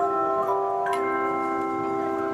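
A handchime ensemble playing aluminium handchimes: chords of clear, sustained bell tones struck and left to ring, with a fresh chord struck about a second in.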